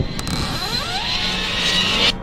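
Intro sound design: a swelling, rising whoosh over a low, dark music bed, cutting off suddenly at the end.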